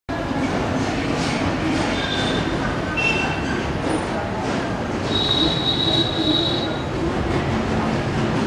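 Steady, loud outdoor din of a busy street, with short high squeals and one drawn-out squeal lasting about a second and a half, starting about five seconds in.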